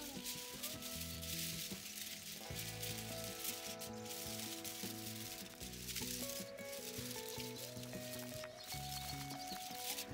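Soft background music of slow, held notes, over the faint crinkling of aluminium foil being crushed and wrapped by hand.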